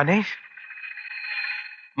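A man says one short word, then a held, high electronic tone from the film's background score sounds steadily for about a second and a half before fading out.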